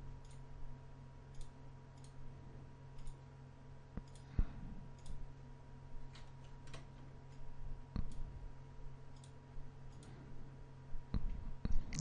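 Computer mouse buttons clicking, single irregular clicks, over a faint steady electrical hum.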